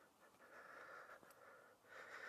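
Near silence, with a faint hiss of breathing.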